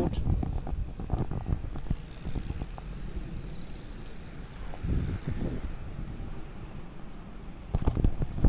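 Outdoor city-street ambience picked up by a handheld camera while walking: a steady low rumble of wind on the microphone and distant road traffic, with a few small knocks early on.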